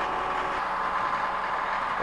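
An engine idling steadily, an even mechanical drone with a constant pitch; a low hum joins about half a second in.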